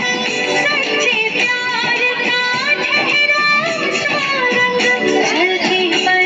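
Recorded dance song playing loudly and without a break, with a plucked-string, guitar-like accompaniment under a gliding melody line.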